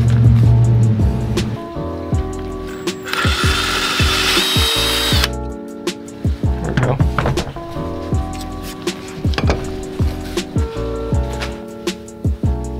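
Cordless drill running for about two seconds in the middle, boring a new hole through a metal mirror-mounting bracket, over background music with a steady beat.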